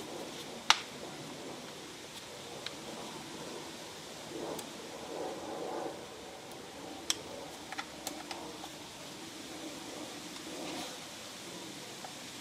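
An Allen key turning screws in a small gas trimmer's engine housing: a few scattered light clicks, the sharpest under a second in, with soft handling rustle over a faint steady background hiss.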